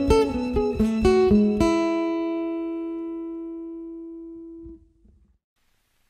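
The closing bars of a soft rock song, ending on guitar: a few plucked notes, then a last chord that rings and fades away. It goes silent about five seconds in.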